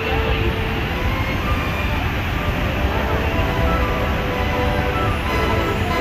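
Loud, steady roar of water plunging over Horseshoe Falls, heaviest in the low rumble, close to the brink.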